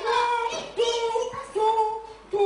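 Children singing: a run of long, evenly held notes with short breaks between them.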